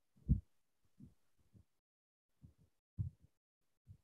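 A few soft, low, muffled thumps on a microphone at irregular intervals, the strongest just after the start and another about three seconds in.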